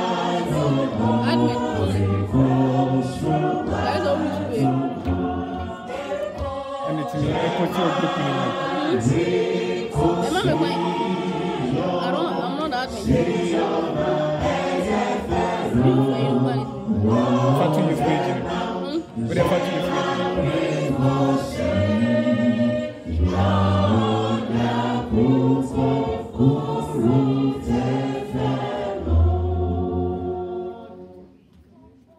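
A church choir singing a hymn, many voices in harmony. There is a long held low note near the end.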